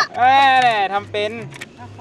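Thai speech, one long drawn-out word then short phrases, over quiet background music with a steady low bass line.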